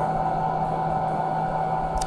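Steady hum with several unchanging tones from running electronic bench test equipment, most likely the cooling fans and power supplies of the oscilloscope and signal generator.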